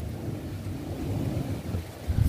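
Storm wind gusting, a low uneven rumble on the microphone, with wet snow coming down.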